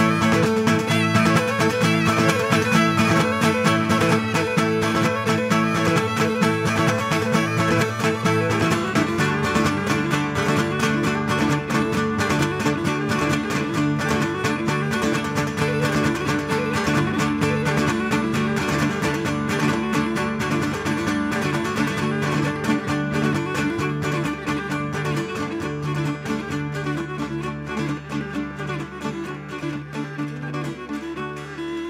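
Live Cretan folk dance music: a Cretan lyra with laouta (long-necked lutes) and a frame drum playing a dance tune. The playing changes character about nine seconds in and eases slightly in level toward the end.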